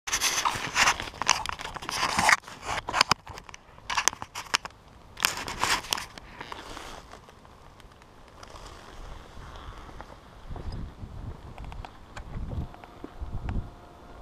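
Crackling, rustling handling noise in the first six seconds as the camera is moved and set down on the ground, then quieter scuffing footsteps on gritty asphalt.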